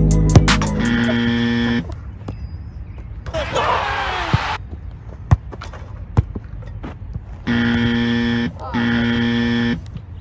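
Three flat electronic buzzer blasts: one about a second in, then two in quick succession near the end, each about a second long. Between them come two sharp thuds about a second apart, typical of footballs being kicked.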